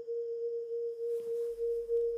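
A single steady pure tone in the middle register, held level without wavering.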